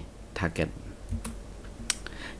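About four sharp computer keyboard clicks, the sharpest near the end, as a presentation slide is advanced, with a short murmur of a man's voice between them.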